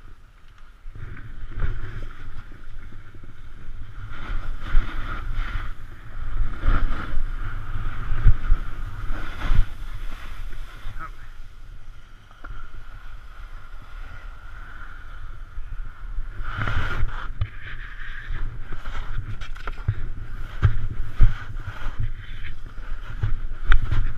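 Wind buffeting the microphone of a helmet-mounted GoPro and skis scraping over hard-packed snow during a fast descent of a steep slope. The rushing and scraping swell and fade unevenly, with a few sharp scrapes.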